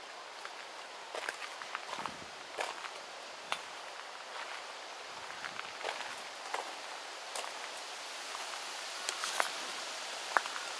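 Footsteps on a garden path, heard as scattered light crunches and clicks over a steady outdoor hiss.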